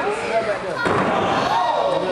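A wrestler's body slammed down onto the wrestling ring's mat: a loud thud about a third of a second in and another impact just under a second in, amid shouting voices.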